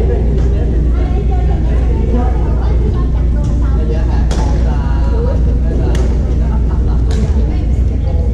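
Badminton play in a gym hall: a loud steady low hum with voices from around the hall, and a few sharp racket strikes on a shuttlecock about four, six and seven seconds in.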